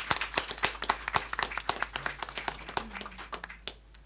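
A small group of people applauding, quick irregular hand claps that thin out and stop near the end.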